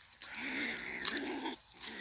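A trapped Chinese ferret-badger growling, a rough unpitched sound lasting about a second and a half, with a sharp click about a second in.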